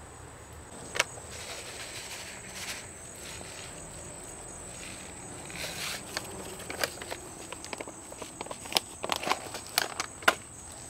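Gloved hands working in wet, sandy soil and handling rose canes: scattered rustles and small clicks, one sharp click about a second in, then busier handling sounds over the last few seconds.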